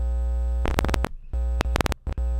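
Electronic music: a sustained synthesizer chord over a deep bass hum, which breaks off about halfway through into a string of sharp glitchy clicks and short dropouts, like static.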